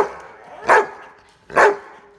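Yellow Labrador retriever barking three times, a little under a second apart, while waiting to be given a bone.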